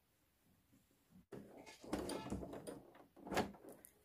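Near silence for about a second. Then fabric and elastic rustle and scrape as they are pulled and shifted by hand on a sewing machine bed, in irregular bursts with one louder scrape near the end.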